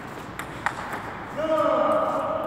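A table tennis ball clicking twice off bat and table, then, about one and a half seconds in, a person's long, loud shout held on one pitch.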